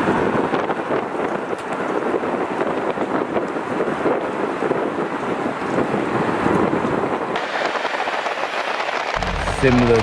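Steady rushing wind and road noise from driving, with wind buffeting the microphone; it cuts off just before the end, when a man's voice comes in.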